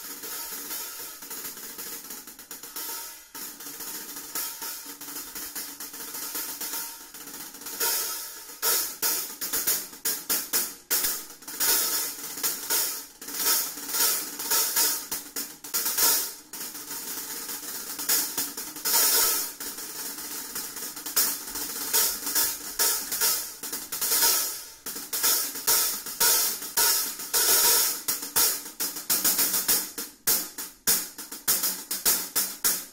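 Impression Cymbals Illuminati hi-hat cymbals played with drumsticks in a steady stream of rhythmic strokes. The playing is softer at first, then grows louder with sharp accents from about eight seconds in.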